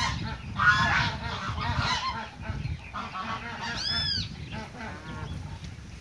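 Domestic geese honking, several short calls with the clearest an arching honk about four seconds in: a squabble over scattered feed as the more numerous local geese chase the brown Chinese geese away.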